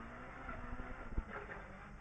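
Opel Adam R2 rally car's four-cylinder engine running under way, heard faintly from inside the cabin, with a single short knock about a second in.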